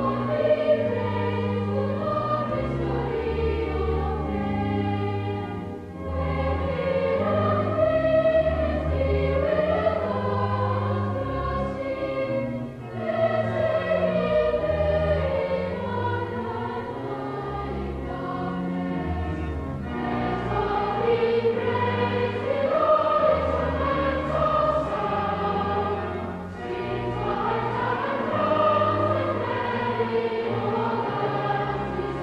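A large children's choir sings a hymn in high treble voices over sustained low organ notes. The singing comes in phrases of about six to seven seconds, with brief breaths between them.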